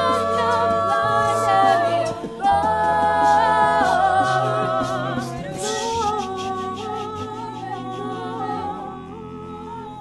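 Mixed-voice a cappella group singing: a lead voice over held chords, with a bass line moving in long held notes underneath. The singing gets quieter over the last few seconds.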